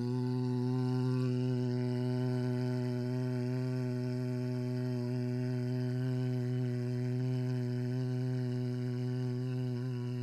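A man's voice toning one long, steady low note, its vowel colour shifting slightly. It is sung as a healing tone sent to a sick man.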